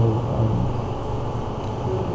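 A man's drawn-out hesitant 'um' near the start, over a steady low background rumble with no clear source.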